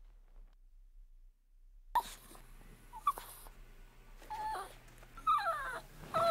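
A small dog whimpering: after about two seconds of near silence, a few short, falling whines that come more often and grow louder near the end.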